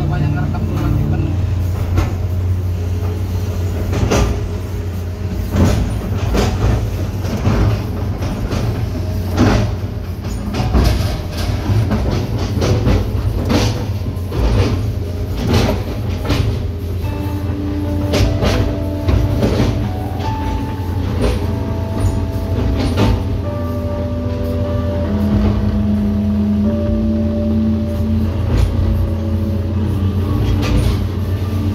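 Hitachi 210-class excavator's diesel engine running steadily, heard from inside the cab, with many sharp knocks and cracks as the bucket chops felled oil palm trunks, densest in the first half. From about halfway, a melodic tune of changing notes plays over the engine.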